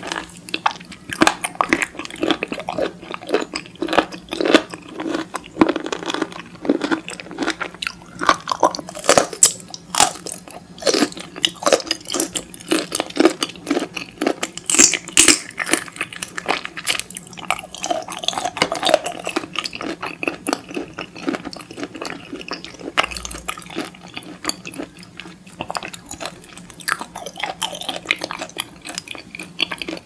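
Close-miked chewing and biting of raw peeled shrimp: a steady run of short, wet mouth clicks.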